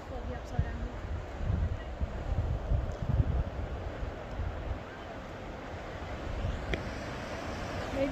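Gusty wind buffeting the microphone over the steady rush of sea waves breaking against rocks. The gusts are strongest in the first half.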